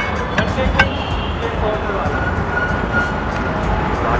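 Steady hiss and low rumble of a gas burner with tomato sauce cooking in a steel pan, with a few light clicks in the first second.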